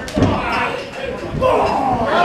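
A single heavy thud on the wrestling ring's canvas just after the start, as a body or feet land hard on the mat, followed by people's voices in a large room.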